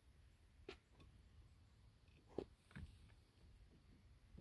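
Near silence with three faint short knocks: one a little under a second in, the loudest about halfway through, and another just after it.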